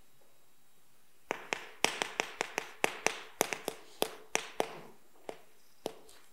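Chalk tapping and scraping on a blackboard as characters are written: a quick run of sharp taps, about four a second, starting about a second in, then two last taps near the end.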